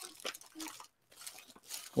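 Faint, scattered rustles and light clicks of a package being handled and opened by hand, with small glass sample vials inside.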